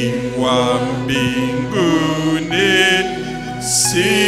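Worship singing over steady sustained accompaniment chords, the voice holding long, wavering notes.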